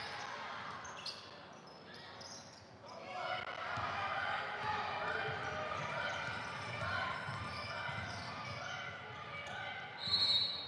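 Basketball game sounds in a gymnasium: a ball bouncing on the hardwood court amid players' and spectators' voices, which grow louder about three seconds in.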